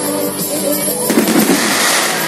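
Fireworks going off with loud music over them; a cluster of sharp bangs comes about a second in.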